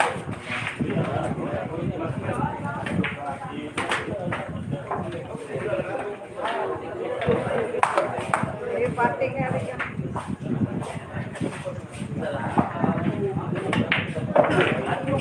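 Indistinct chatter of people around pool tables, with several sharp clicks of cue tips and billiard balls striking scattered through it.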